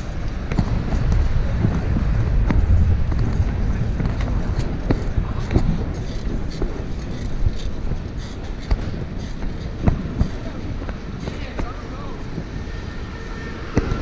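Wind rumbling on an action camera's microphone while riding a bicycle through city traffic, with road and traffic noise underneath and scattered short clicks and knocks from the bike. The wind rumble is heaviest in the first few seconds.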